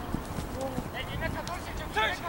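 Distant shouting voices of players calling across an outdoor soccer pitch, loudest about a second in and again near the end, over a low rumble of wind on the microphone.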